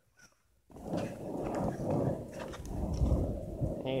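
Skateboard wheels rolling on rough pavement: a continuous low rumble with scattered clicks, starting under a second in after a brief hush.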